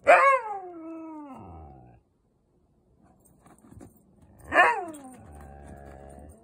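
Husky vocalizing twice: a loud yowl falling in pitch at the start, lasting about two seconds, and another about four and a half seconds in that trails off into a low, steady grumbling growl.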